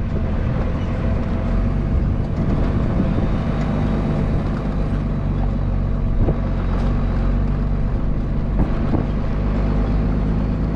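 Pickup truck driving along a rough dirt track, heard from outside at the side mirror: a steady engine drone with road noise and a few light knocks.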